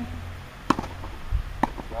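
Two sharp tennis-ball impacts about a second apart, from the ball striking the racket strings and the clay court, with a dull low thump between them.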